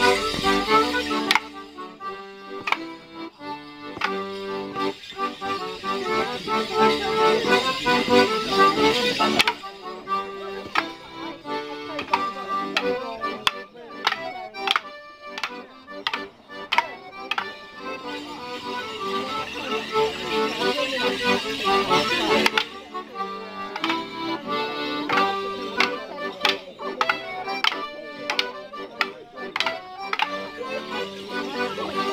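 A Morris dance tune played on a squeezebox, with the dancers' leg bells jingling in the stepping figures. Twice, from about a third of the way in and again in the last quarter, a run of sharp clacks of wooden sticks struck together sounds over the tune.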